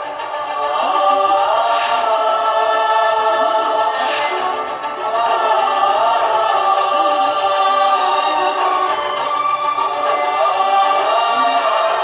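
Dramatic background music with a sung, choir-like melody gliding over sustained chords. Brief shimmering accents come in at about two and four seconds.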